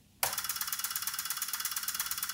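Electromechanical relays of a home-built relay calculator clicking in a rapid, even train as the machine steps through a calculation. The clicking starts a moment after the switch is touched.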